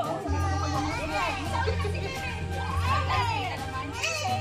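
Many voices at once, children's among them, chattering and calling out, over background music with a steady bass.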